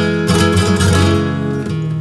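Flamenco guitar playing on its own: a few strummed chords near the start, then ringing notes that grow a little quieter toward the end.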